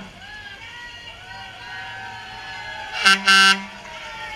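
A horn sounds twice about three seconds in: a brief toot, then a longer, steady, loud blast. Faint voices are heard underneath.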